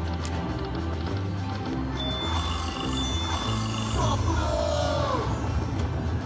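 Aristocrat Buffalo Gold slot machine playing its free-spin bonus music, with a steady pulsing beat as the reels spin. A held high tone comes in about two seconds in, and a brief sound effect with gliding pitches plays about four seconds in as the reels land.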